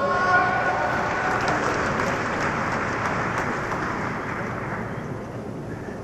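Audience applauding, fading gradually over several seconds.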